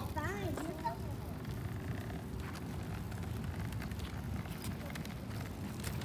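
A child's high voice trailing off in the first second, then faint steady outdoor background noise: a low rumble with a few light ticks.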